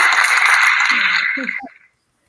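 A loud, even wash of noise from played-back footage of a crowded dance scene, with a few short voices near the end. It cuts off suddenly just before the end.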